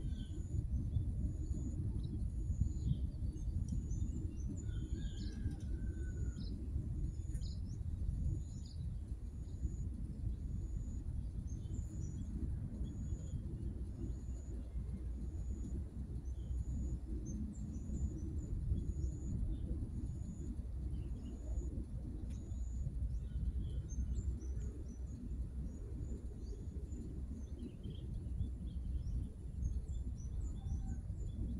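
Outdoor ambience: birds chirping over a steady low rumble, with one short high chirp repeating about every second and a half.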